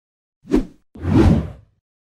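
Two whoosh sound effects of an animated intro: a short one about half a second in, then a longer, louder one from about one second in.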